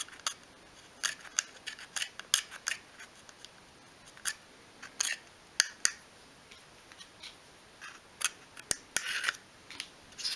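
A thin wooden stick scraping and tapping against the inside of a small glued wooden carcass in short, irregular scratches, clearing out excess glue.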